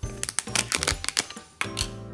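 A quick run of crackly clicks as the plastic lid is pulled off a cardboard oats canister and its paper seal is torn open, over background music.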